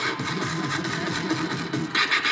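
Beatboxer performing through a PA: a low, pulsing vocal bass with a fast beat of light clicks over it.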